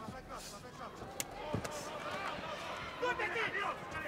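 Gloved punches landing in a kickboxing exchange: two sharp smacks a little over a second in, over faint shouting voices in the arena.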